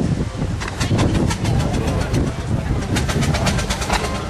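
A machine running with a rapid, regular clicking, about six or seven clicks a second, starting about half a second in and growing more distinct, over a low rumble and background voices.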